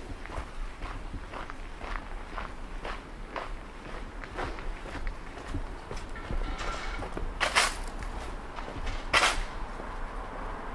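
Footsteps walking on paving at a steady pace, about two steps a second. Two louder, hissing scrape-like noises come near the end, the loudest sounds here.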